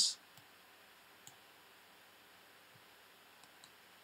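Faint computer mouse clicks over quiet room tone: one about a second in and two more near the end.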